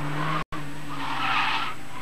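Car tyres squealing as a small car corners hard at the limit of grip, over a steady engine drone. There is a brief cut in the sound about half a second in, and the squeal swells and fades in the second half.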